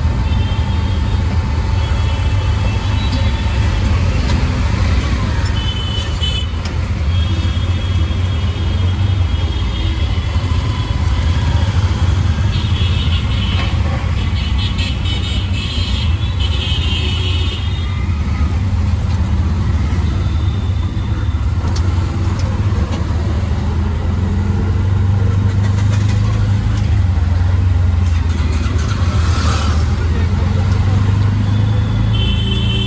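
An auto rickshaw's small engine running steadily underway in city traffic, heard from inside the open passenger cabin as a continuous low drone with road noise. Horns from the surrounding traffic toot at intervals.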